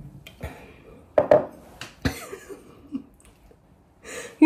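A stemless drinking glass is handled and set down on a hard kitchen surface, giving a few sharp knocks and clicks. The loudest comes about a second in, with lighter ones near two and three seconds.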